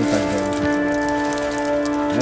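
Rain falling steadily with a patter of drops, over a steady droning tone.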